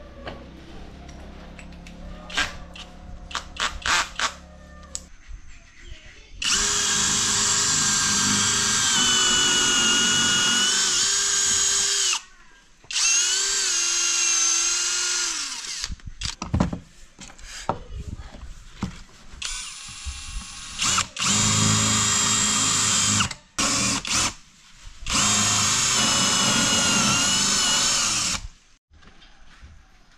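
Cordless drill boring into short round wooden leg blanks, in four runs of a few seconds each starting about six seconds in, its pitch dipping as the bit bites. Clicks and knocks of the wood and drill being handled come before and between the runs.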